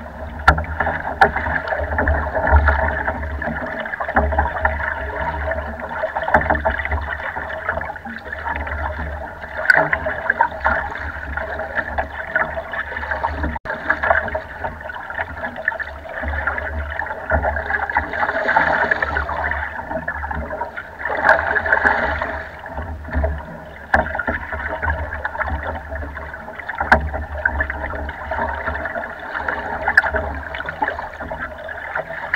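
Water splashing and lapping against the hull of a small rowboat under way on a choppy lake, with wind buffeting the microphone and a few brief knocks.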